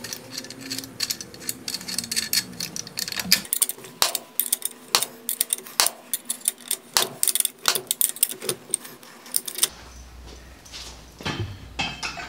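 Hand winch on a Harbor Freight pickup bed crane being cranked, its ratchet pawl clicking over the gear teeth in quick, uneven runs. The clicking stops about ten seconds in, followed by a few metal knocks.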